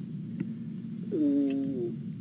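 A man's voice drawing out one vowel for under a second, falling slightly in pitch, as a hesitation between phrases. A steady low hum runs beneath it, and a short click comes just before.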